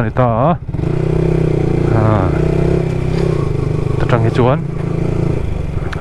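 Motorcycle engine running steadily while being ridden, heard close up, with short bursts of the rider's talk over it.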